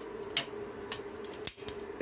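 A few light clicks and taps as a metal spring clamp and the melted PETG template are handled on the steel plate, over a faint steady hum.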